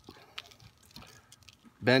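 Faint, scattered small clicks and rustles of fingers bending and working a thin metal drain wire from shielded outdoor network cable, with a spoken word near the end.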